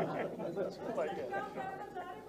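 Faint chatter: several people talking at once, off-microphone, in a press room.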